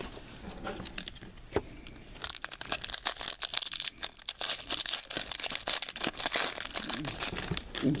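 Foil trading-card pack being torn open and crinkled by hand, a dense crackling of foil starting about two seconds in and running on to the end.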